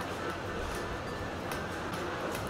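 Steady restaurant room noise with faint music in the background and a light click about one and a half seconds in.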